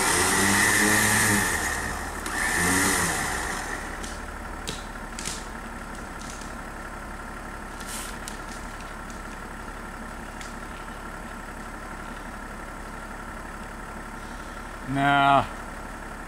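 A man whooping and laughing over the steady idle of a pickup truck's engine, with a few faint knocks a few seconds in and another short shout near the end.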